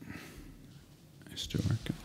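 A man's low, muttered words, a brief half-second mumble about midway, between otherwise quiet room tone.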